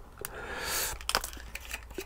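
Handling noise from fitting a small lamp onto a selfie stick: a brief scraping rustle about half a second in, then a few light plastic clicks.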